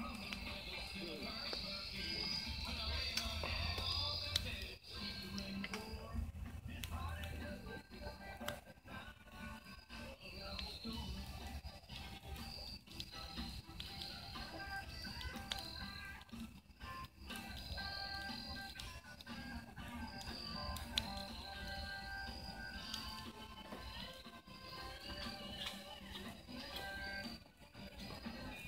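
Background music with held notes, running throughout.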